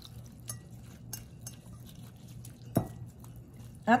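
Metal wire whisk stirring soy sauce into chopped spring onion and garlic in a glass bowl, with scattered light clinks of the wires against the glass and one louder knock a little before three seconds in.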